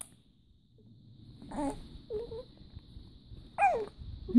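Baby girl cooing: a short coo, a brief second one, then a louder coo near the end that falls in pitch.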